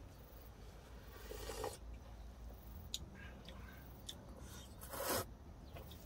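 Quiet eating sounds of ramyeon: soft slurps of noodles and broth, the clearest about five seconds in, with a few light clicks of chopsticks and bowls.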